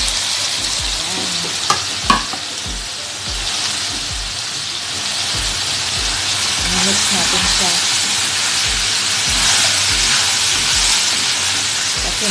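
Diced potatoes and carrots sizzling in a wok while being stirred with a wooden spatula, with two sharp knocks about two seconds in. The sizzle grows a little louder in the second half.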